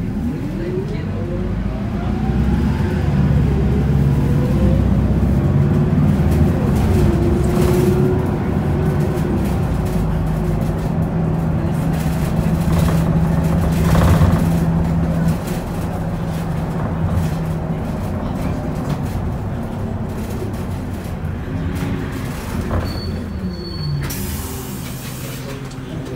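Isuzu Erga city bus's four-cylinder diesel heard from inside the cabin, pulling away from a standstill: the engine and drivetrain pitch climbs over the first couple of seconds, the bus runs loudest under acceleration, then settles to a steadier, quieter cruise about fifteen seconds in.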